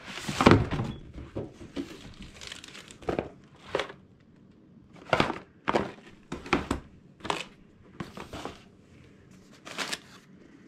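Cardboard packaging and plastic wrap being handled: a series of separate short crinkles, scrapes and light thumps as a boxed unit and a small cardboard box are pulled out of their cardboard inserts, the loudest about half a second in.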